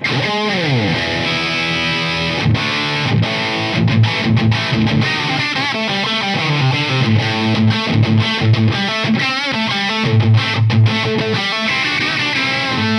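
Gibson Slash Les Paul electric guitar played through a Marshall DSL40 valve combo with distortion: a lead riff that opens on a note sliding down in pitch, then runs of picked notes and held chords.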